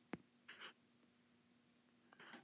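Near silence with a faint steady hum: a single click just after the start and a short faint scratch about half a second in, a stylus drawing a line on a tablet.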